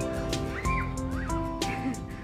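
Background music with held notes and a regular beat. About half a second and a second in, two short gliding sounds rise and fall over it.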